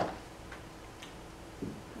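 Quiet room tone with two faint clicks about half a second apart, and a brief voice sound near the end.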